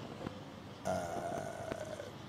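A man's drawn-out hesitation "uh", held at one steady pitch for about a second, after a short pause in his speech.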